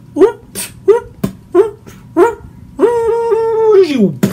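Vocal beatboxing with moaning: five short upward-swooping moans in a steady rhythm, with sharp mouth-percussion clicks between them, then one long held moan that falls in pitch near the end.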